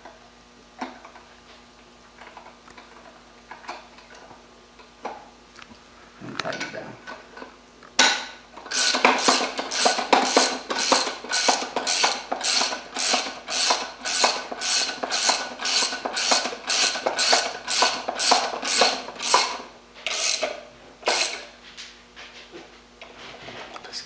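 Half-inch socket ratchet on a long extension clicking in even strokes, about two a second, as it runs the stock nut down inside a shotgun buttstock; it starts about eight seconds in after some light metal handling clicks and stops a few seconds before the end.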